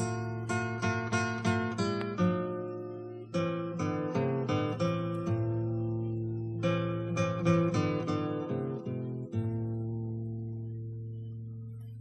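Acoustic guitar playing an instrumental passage of quick plucked notes in short phrases. It ends on a chord left ringing and slowly fading for the last two to three seconds.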